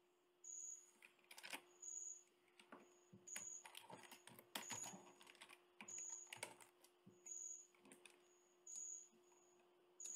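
Faint, irregular keystrokes on a computer keyboard as code is typed. A short high-pitched tone recurs roughly once a second over a faint steady hum.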